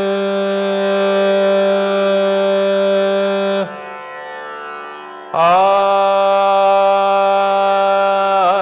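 A man singing long held notes of a Hindustani morning raga over a tanpura drone. The first note breaks off a little past halfway and leaves the tanpura ringing alone for under two seconds. Then the next held note comes in.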